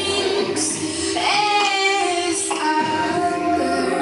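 A song with a high singing voice over a steady held note.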